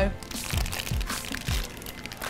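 Background music with a steady beat, over crunching as a biscuit is bitten and chewed.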